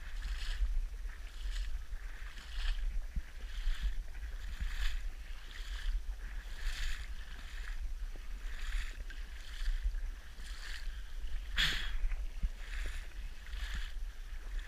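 Paddle strokes dipping and pulling through water, a swishing splash about once a second, over a low rumble of wind on the microphone.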